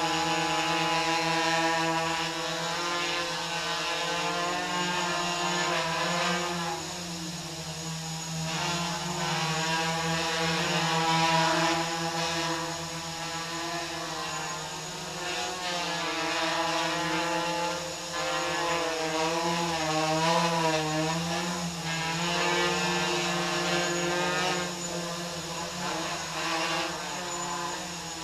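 Quadcopter with MS2208 brushless motors and 8-inch props hovering: a steady multi-toned buzz whose pitch wavers gently as the motors make small speed corrections, with slow swells and dips in loudness.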